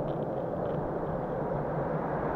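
Steady low rumbling outdoor noise with no distinct event, most likely wind buffeting the microphone.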